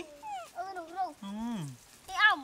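Baby monkey giving a few short, high-pitched whimpering calls in quick succession, followed by a lower call that falls in pitch.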